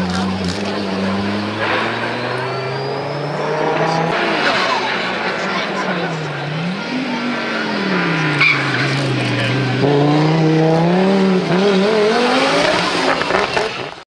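Audi Quattro rally cars' turbocharged five-cylinder engines revving hard through the corner, the engine note rising and falling again and again with throttle and gear changes.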